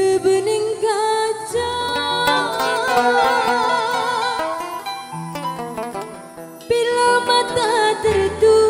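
A woman singing with a wavering vibrato over a live band playing keyboard, hand drums and plucked strings.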